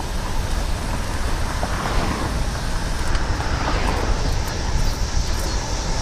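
Wind rushing over the camera microphone and tyre noise as a bicycle descends at about 27 mph: a steady rush with a heavy low rumble, swelling a little around the middle.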